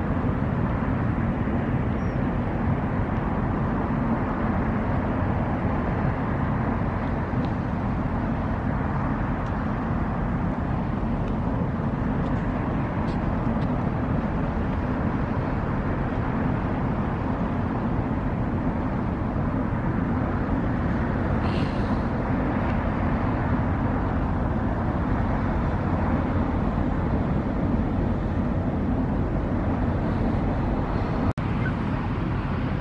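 An inland motor tanker's diesel engine running steadily as the vessel passes close by: a constant low drone with a steady hum.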